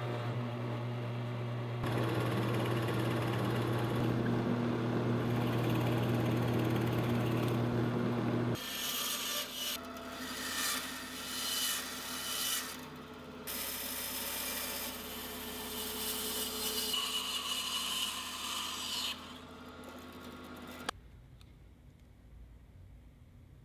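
A drill press motor runs with a steady hum and, about two seconds in, starts boring into a wood block. After about eight seconds this gives way to a bandsaw cutting a laminated hardwood bow blank, the cutting noise rising and falling as the wood is fed. It stops with a click shortly before the end.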